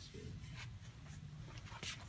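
A few short, scratchy rubs of a hand brushing against the wooden box, over a steady low hum.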